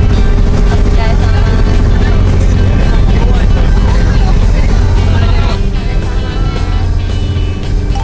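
Loud, steady low engine rumble inside the cabin of a moving vehicle, mixed with background music and voices. The rumble stops near the end.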